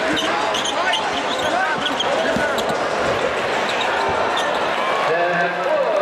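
Basketball dribbled on a hardwood court, with short bounces, and sneakers squeaking in short rising and falling chirps, over the steady murmur of a large arena crowd.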